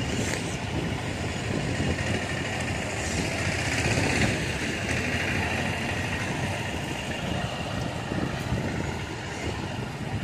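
Street ambience from road traffic: a steady wash of vehicle noise, growing a little louder around the middle of the stretch.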